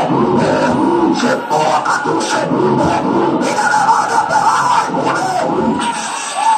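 A congregation's many voices praying and calling out aloud together over loud music, with no single voice standing out.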